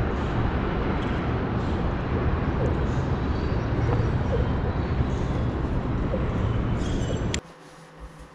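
Steady rumble of road traffic from the bridge overhead, heard outdoors on the riverbank. It cuts off suddenly near the end, leaving quiet room tone.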